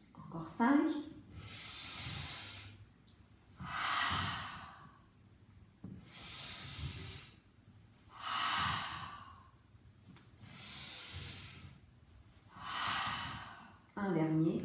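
A woman's deliberate exercise breathing: six long, audible breaths, in and out in turn, about one every two seconds, timed to a Pilates movement.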